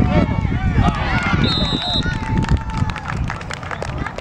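Spectators shouting and cheering in overlapping voices as a youth football player makes a long run. A short, high whistle blast about one and a half seconds in is typical of a referee blowing the play dead.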